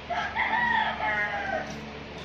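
A loud animal call: one long cry of several joined notes lasting about a second and a half, dropping in pitch at the end.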